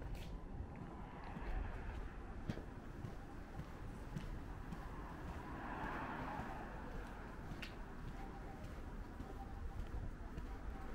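Faint outdoor street ambience: a low steady traffic hum, a vehicle swelling past around the middle, and a few light clicks.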